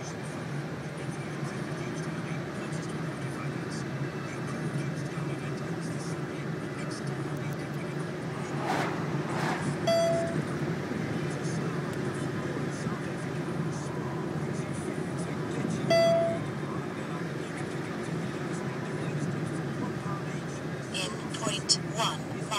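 Steady road and engine noise inside a moving car's cabin, with two short electronic beeps about six seconds apart and a few sharp clicks near the end.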